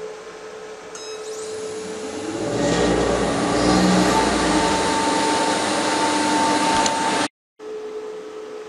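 Old Strömberg 5.5 kW electric motor, run from a Vacon industrial variable frequency drive, starting up and driving a VDF lathe through V-belts. The sound builds over about two seconds into a steady running noise with a whine, then stops abruptly about seven seconds in.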